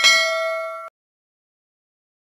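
A notification-bell sound effect: a bright metallic ding of several steady tones that rings for just under a second and then cuts off suddenly.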